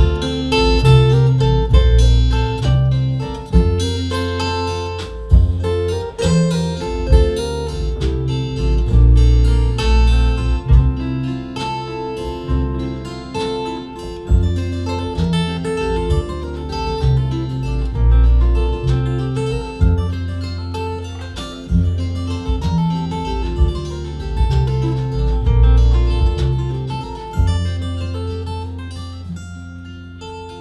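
Instrumental break of a live acoustic folk band: two acoustic guitars strummed and picked over an upright double bass playing low notes, with drums. The playing eases down in the last couple of seconds.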